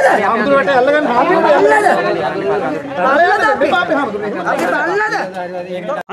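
A crowd of people talking loudly over one another, several voices at once.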